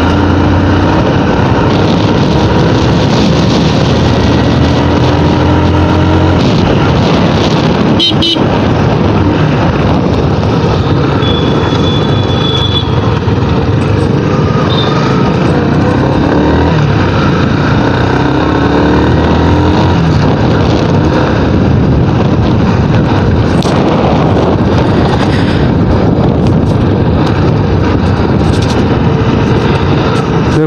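Motorcycle under way: the engine runs with its pitch rising and falling as the throttle opens and closes, under a steady rush of wind and road noise on the bike-mounted microphone. A single sharp knock about eight seconds in.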